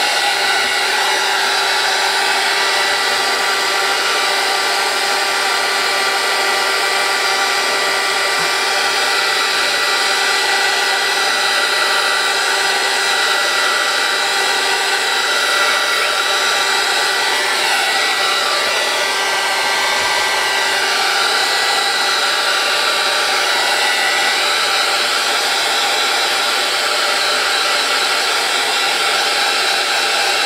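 Craft heat tool running steadily, blowing hot air to dry a layer of watercolor paint. It makes an even rush of air with a steady motor whine.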